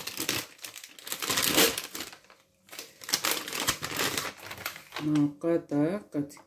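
Plastic packaging crinkling and rustling in irregular bursts as a chorizo sausage is unwrapped, with a brief pause about two seconds in.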